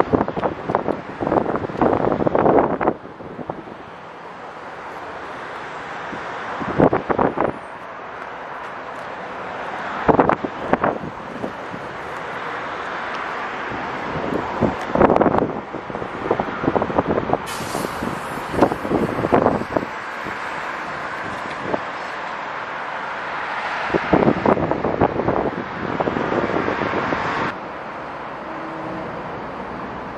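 Outdoor city ambience: a steady rush of road traffic with louder surges every few seconds and no speech.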